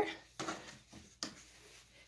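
Brief rustles of green-screen fabric being handled and wadded, with one sharper click a little over a second in.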